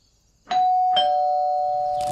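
Two-note ding-dong doorbell chime: a higher note about half a second in, then a lower note half a second later, both ringing on.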